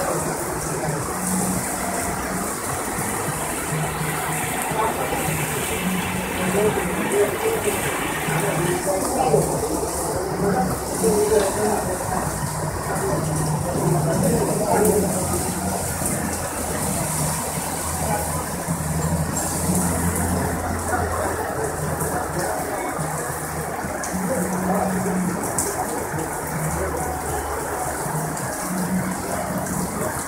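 Heavy rain pouring steadily onto the street and pavement in a sudden downpour. A low vehicle engine hum joins it in the middle.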